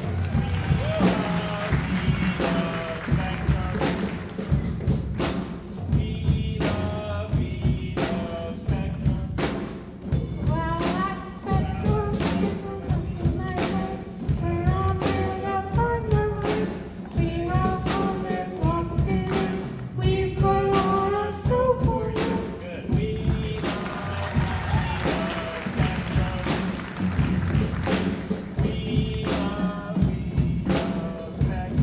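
Live band music with a steady drum beat, and a voice singing over it through a microphone.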